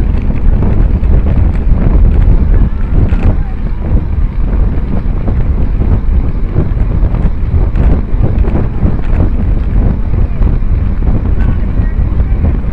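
Loud, steady wind rumble buffeting the microphone of a bike-mounted camera as the bicycle rides along the road.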